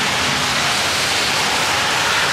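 Heavy rain pouring down, a loud, steady hiss.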